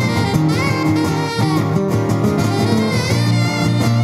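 Live saxophone playing a melody over a strummed acoustic guitar.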